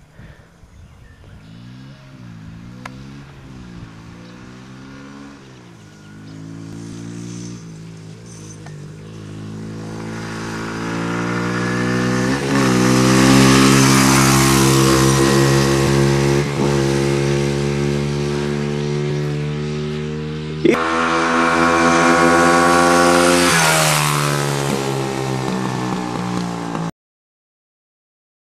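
Small dirt bike engine revving up and down at a distance, then louder and steadier as it passes close by twice, its pitch dropping after the second pass. The sound cuts off suddenly near the end.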